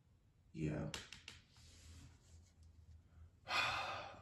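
A person's breathy sigh near the end, lasting under a second, after a few faint clicks.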